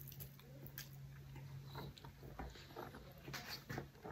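Close-miked mouth sounds of a person eating stir-fried wok noodles: slurping a mouthful of noodles in off chopsticks, then chewing with many small wet clicks and smacks.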